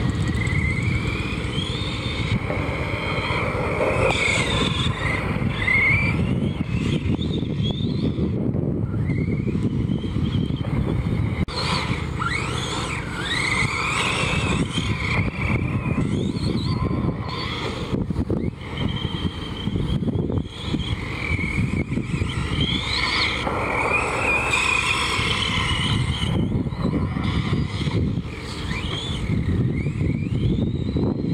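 Arrma Big Rock electric RC monster truck driving on a dirt track: its motor and drivetrain whine rising and falling in pitch with the throttle over and over, over the rumble of its tires on the dirt.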